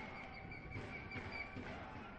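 Faint stadium ambience on the broadcast sound, an even low hush with a faint steady high tone running through it.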